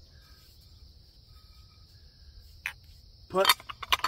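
A steady, high-pitched insect drone in grass, with one sharp click about two and a half seconds in.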